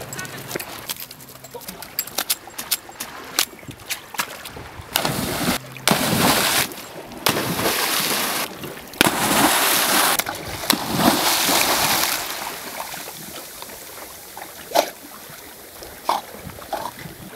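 A flat-coated retriever leaping into seawater: a run of loud splashes and churning water from about five to twelve seconds in, then quieter sloshing as it swims.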